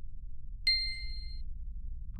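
A single bright ding sound effect about two-thirds of a second in, ringing out for under a second, over a low steady rumble: the sting of an animated logo reveal.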